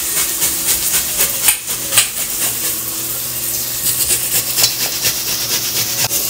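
Chopped onion and green chilli frying in hot oil in a kadhai: a steady sizzle with crackling, and two sharper clicks about a second and a half and two seconds in.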